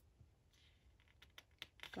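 Near silence with a few faint ticks and light rustling of a paper photobook's glossy pages being handled, the ticks coming in the second half.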